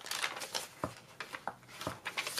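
Paper pages of a handmade junk journal rustling as they are lifted and turned by hand, with a few soft clicks and taps among the rustle.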